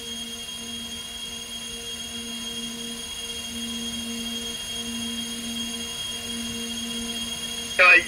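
A steady low electrical or fan hum with a faint high whine above it. About halfway through the low hum begins to swell and fade in roughly one-second pulses.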